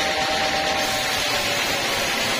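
Sawmill band saw running steadily while its blade cuts lengthwise through a teak log, a continuous hissing whir of the blade in the wood.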